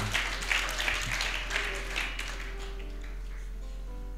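Scattered clapping from a congregation, fading away over the first two seconds or so, then a few faint held musical notes. A steady low electrical hum runs underneath.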